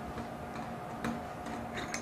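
A few faint, light metallic ticks from an Edlund S11 stainless steel manual can opener as its handle is turned counterclockwise to unscrew the arbor from the gear. One comes about a second in and two come close together near the end.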